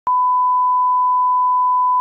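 A TV test-card tone: one steady, loud, high-pitched beep that switches on with a click and cuts off suddenly about two seconds in.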